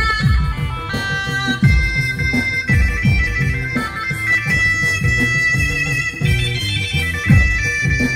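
Instrumental interlude of a Christian devotional song: an electronic keyboard plays a sustained lead melody of long held notes over a steady beat and bass line, with electric guitar accompaniment.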